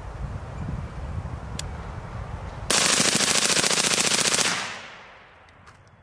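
Suppressed Smith & Wesson M&P15 rifle with an FRT-15 forced-reset trigger firing one rapid string of shots, nearly three seconds in, lasting under two seconds. The shots come so fast they run together into a near-continuous burst like full auto, though each shot is a separate trigger pull reset by the trigger mechanism. The burst fades out quickly after the last shot.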